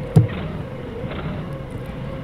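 Doosan 4.5-ton forklift running steadily at low speed while its forks are eased in, with a thin steady whine over the engine drone. A single short knock sounds just after the start.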